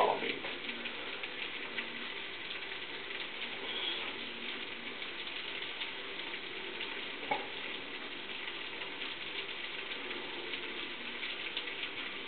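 Food sizzling in a frying pan on the stove: a steady sizzle full of fine crackles, with one small click about seven seconds in.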